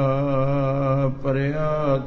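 A man's voice chanting Sikh Gurbani, drawing one syllable out into a long wavering held note. It breaks briefly just past the middle, then goes into another held note.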